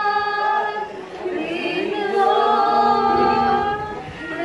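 A small group of young men and women singing together in chorus, holding long notes, with a short break between phrases about a second in.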